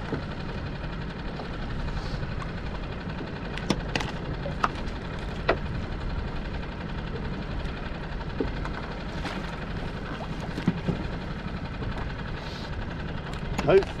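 Steady low rumble of a light breeze on the microphone, with a few light clicks and taps as the longline is pulled in hand over hand over the side of the dinghy.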